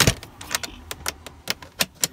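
A string of short, sharp clicks and knocks, about half a dozen, the loudest at the very start, from small objects being handled against wooden slats.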